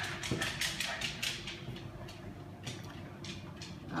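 Dogs' claws clicking on a wooden floor: a quick run of light taps, several a second, thickest in the first second and a half and thinning out after.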